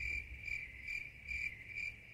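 Cricket chirping: a high, steady trill that swells and fades about twice a second.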